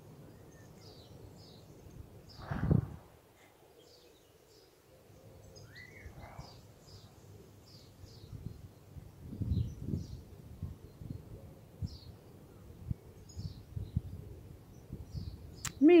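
Faint bird chirps scattered throughout, small birds calling in the background. A single soft thump comes about three seconds in, and low soft knocks near the end.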